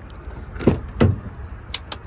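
Rear passenger door of a Honda CR-V being opened by its handle: two thumps about a third of a second apart as the handle is pulled and the latch releases, then a couple of light clicks near the end.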